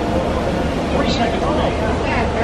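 Indistinct voices of people nearby over a steady low rumble and a faint continuous hum.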